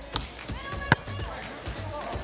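A volleyball hit once with a sharp smack a little under a second in, with a fainter tap just before it, over background music.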